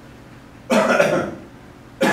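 A man coughs once, about two thirds of a second in; the cough lasts a little over half a second.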